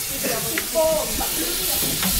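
Onions frying in a metal pot, a steady hissing sizzle, with faint talk in the first half.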